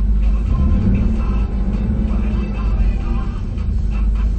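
Music playing from a car stereo inside the cabin, over the low rumble of the Jeep Liberty's engine as it is blipped up a little from idle.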